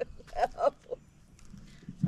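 A person laughing briefly, in about three short breathy bursts within the first second, then dying away.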